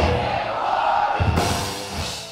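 Rock band music with drums, its level easing off slightly toward the end.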